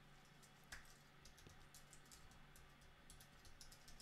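Near silence with a few faint computer keyboard key clicks.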